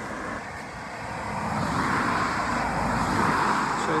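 A car driving past at speed on a wet road, its tyre noise swelling from about a second in and loudest around three seconds in.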